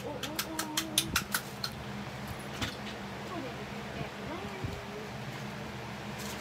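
A quick run of about eight sharp plastic clicks, some five a second, over the first second and a half, from a small toy worked in the hands, then faint humming voice sounds over a low steady hum.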